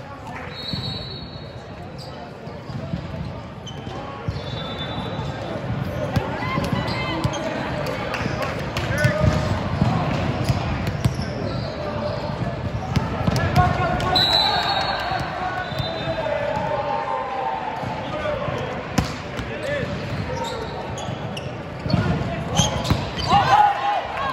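Volleyball game in a gym: players' voices and calls between points, with a ball bouncing and a couple of short high squeaks. Near the end, a rally starts with a run of sharp ball hits.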